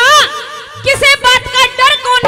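A woman's voice through a stage PA, a quick run of short rising-and-falling vocal notes like a brief laugh, with a held sung note coming back near the end.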